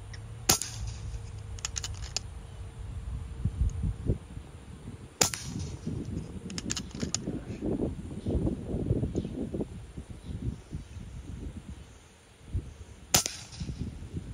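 Three suppressed shots from a PCP air rifle, an FX Panthera, each a sharp crack, spaced several seconds apart. Lighter clicks follow about a second after each of the first two.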